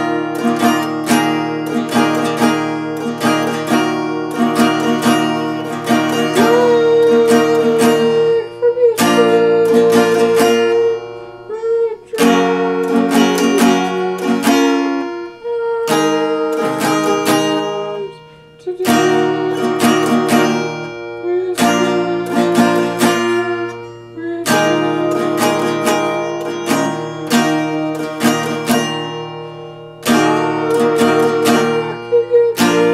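Acoustic guitar being played, a continuous run of picked and strummed chords, with brief dips in loudness about twelve and eighteen seconds in.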